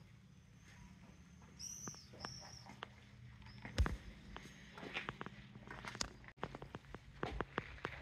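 Faint footsteps of someone walking, a scatter of light clicks and knocks that grows busier after a thump about four seconds in, over a low hum. A few short high chirps sound around two seconds in.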